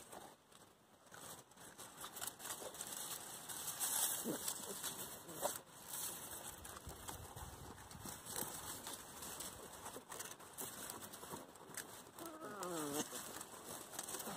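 Weimaraner puppies tussling on straw: soft rustling and scuffling, with a short wavering puppy whine near the end.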